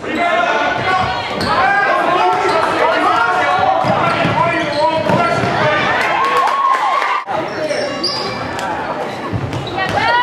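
Basketball game sound in a gym: sneakers squeaking on the hardwood court, a basketball bouncing and players' and spectators' voices, all echoing in the hall. The sound breaks off suddenly for a moment about seven seconds in.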